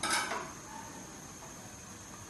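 A short clatter of metal kitchenware against plates on a kitchen counter at the very start, lasting under half a second.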